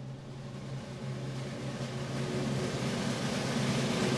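Wind ensemble holding a low sustained note beneath a swelling percussion roll, the whole sound growing steadily louder in a crescendo.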